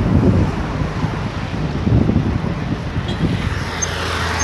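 Wind buffeting a phone's microphone in low rumbling gusts, strongest near the start and again about two seconds in, over road traffic passing on a city avenue.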